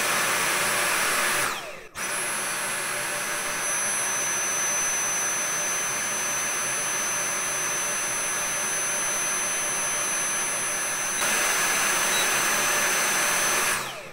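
Dyson cordless stick vacuum's motor running at its maximum power setting, a steady high-pitched whine with a brief break about two seconds in. It is drawing about 16.5 A from a battery pack rebuilt with new 18650 cells, and it keeps running instead of cutting out as the worn pack did.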